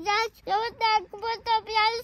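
A young child talking in a high, sing-song voice, in a string of short syllables.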